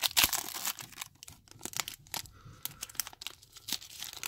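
Foil booster-pack wrapper of a Pokémon trading card pack being torn open by hand, with crinkling and crackling of the foil, loudest in the first second.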